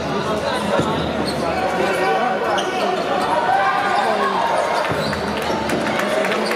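A basketball being dribbled on a hardwood court, with players' shoes on the floor, under a steady background of voices in the arena.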